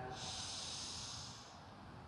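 A long, deep breath through the nose, a soft hiss that fades out about a second and a half in, taken just before a round of kapalbhati breathing.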